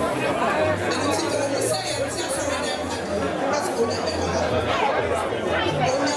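Chatter of a seated crowd: many voices talking at once and overlapping, with no single voice standing out.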